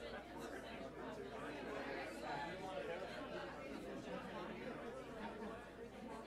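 Crowd chatter: many overlapping voices talking indistinctly at once.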